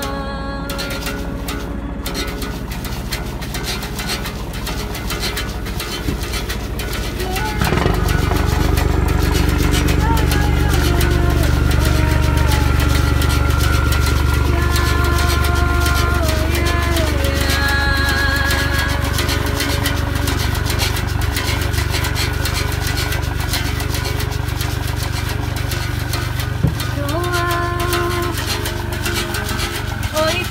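A woman singing a slow, unaccompanied-sounding melody with long held notes. From about a quarter of the way in, the steady low drone of a boat's engine runs underneath.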